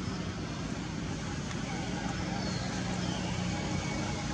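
Steady low rumble of outdoor background noise, like distant traffic, with a few faint high chirps and one short falling whistle-like glide about two and a half seconds in.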